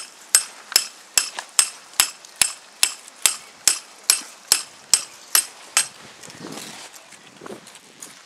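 A hammer driving a stake into the ground: a steady run of about fifteen sharp, ringing blows, roughly two and a half a second, that stops about six seconds in.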